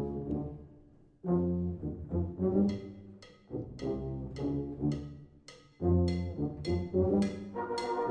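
Brass band playing a funk riff in short, punchy chords, with a regular high percussion tick above it. The music stops briefly about a second in, then the riff starts up and comes back in three phrases separated by short breaks.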